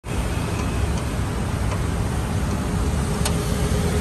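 Steady low rumble of road traffic, with a few faint clicks.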